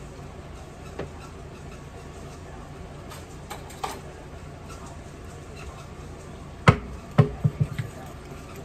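Kitchen handling noises: a few faint clicks, then one sharp knock about two-thirds of the way in and a quick run of lighter knocks, as dishes and utensils are handled. A low steady hum runs underneath.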